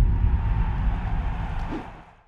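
Logo-intro sound effect: a deep boom with a rumbling, hissy tail that fades out over about two seconds.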